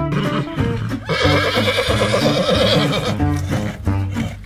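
A loud, quavering horse-like whinny lasting about two seconds, starting about a second in, voiced for a giant unicorn puppet, over continuous music with plucked notes.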